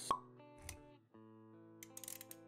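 Intro music with sound effects: a sharp pop right at the start, a soft low thud just after half a second in, over held musical notes that drop out briefly about a second in and then resume.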